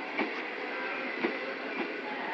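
Passenger coaches rolling past at close range, a steady rolling rumble with three sharp wheel knocks over rail joints; the loudest knock comes just past the middle.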